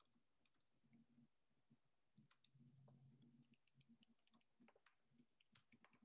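Near silence, with faint scattered clicks of typing on a computer keyboard and a faint low hum about halfway through.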